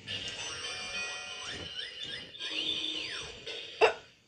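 Electronic music and sound effects from a Silly Six Pins toy bowling game, with tones that slide up and down. A short, loud sound comes near the end.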